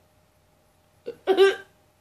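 Near silence with a faint steady hum for about a second, then a short, sudden vocal sound from a person lasting about half a second.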